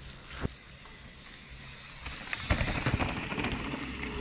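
Mountain bike rolling down a loose stony trail: tyre noise on gravel and rock with knocks and rattles, growing louder about two seconds in as the bike comes closer.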